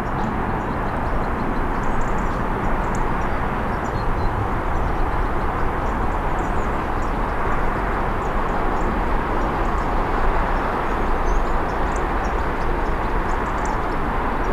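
Steady hiss and rumble of road traffic passing continuously, with no single vehicle standing out.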